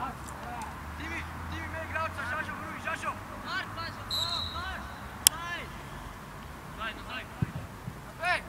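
Football match sounds: scattered distant shouts of players, and a single sharp kick of the ball about five seconds in, the loudest sound. A duller thud of the ball follows near the end.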